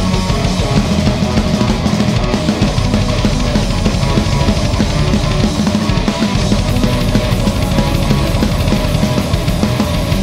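Live instrumental progressive metal: distorted electric guitar over fast, dense drum-kit playing with cymbals and backing audio, continuous and loud.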